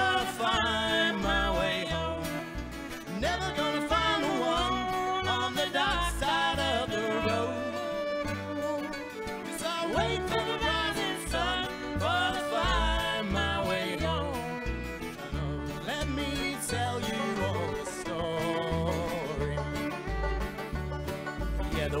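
Live acoustic string band playing an instrumental break between verses: acoustic guitar, banjo, mandolin, fiddle and upright bass, with the bass keeping a steady beat underneath.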